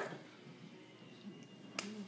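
A single sharp click near the end, over quiet room tone.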